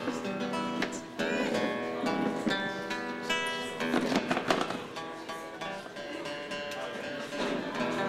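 Acoustic guitar playing a run of plucked notes and chords.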